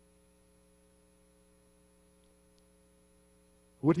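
Near silence with a faint, steady electrical hum made of several constant tones. A man's voice starts right at the end.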